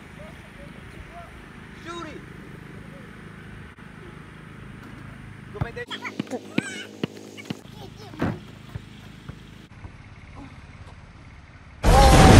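Faint voices at a distance, with a burst of short, sharp, louder sounds about six seconds in and one more a little after eight seconds.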